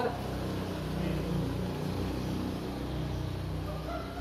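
A steady low hum, like a motor or engine running.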